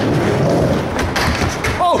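Skateboard wheels rolling on a skatepark ramp, with a couple of sharp knocks about a second in, then a man's excited 'oh' near the end.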